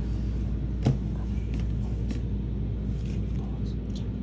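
Steady low rumble of the trailer's two rooftop air conditioners running, with a single short knock about a second in.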